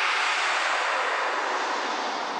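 A synthesised noise sweep in a progressive trance track's outro, a rushing hiss that sinks in pitch and slowly fades out.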